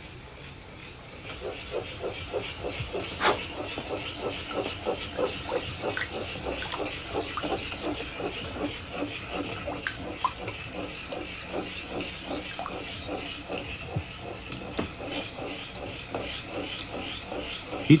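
A brush working liquid glaze in a pot and onto an unfired raku tea bowl: rhythmic wet strokes, about four a second, over a faint hiss.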